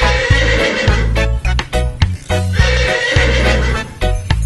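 Upbeat song with a steady beat, over which a horse whinny is heard twice, each about a second long: at the start and again past the middle.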